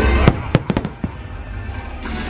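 Fireworks exploding overhead: a quick volley of about six sharp bangs in the first second, the first the loudest.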